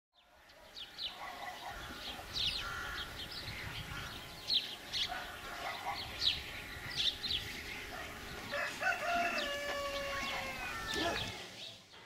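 Small birds chirping over and over, and a rooster crowing once in one long call from about eight and a half to eleven seconds in. The sound fades in from silence at the start.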